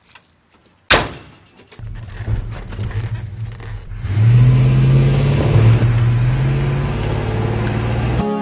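A pickup truck's door slams shut about a second in. Then the engine starts and runs with a low rumble, growing louder and steadier about four seconds in.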